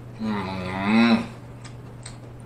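A man's closed-mouth "mmm" of enjoyment while chewing. It is held about a second, the pitch dipping and then rising just before it stops.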